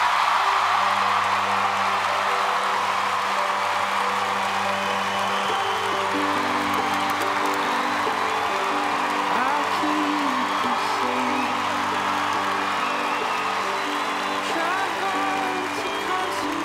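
Large theatre audience applauding and cheering over sustained background music with long held notes.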